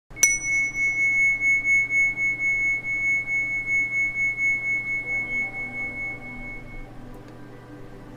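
A single high-pitched metal meditation chime struck once, then ringing on with a slow wavering pulse and fading away over about seven seconds.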